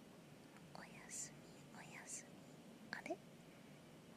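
A person speaking very softly, almost whispering: three short hushed utterances, the first two ending in a hiss, over near silence.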